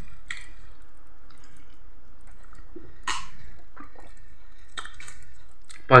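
Faint mouth sounds of someone sipping water from a glass and chewing, with a few soft clicks and a short hiss about three seconds in.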